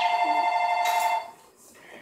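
An electronic ringer sounding: two steady high tones together with a fast trill, stopping sharply a little over a second in.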